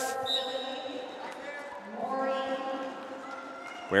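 Roller derby jam-start whistle, one high blast beginning a moment in and fading, over background voices in the hall.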